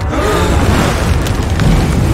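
Cartoon sound effect of a huge wave of water rushing in: a loud, steady rush with a deep rumble that starts suddenly.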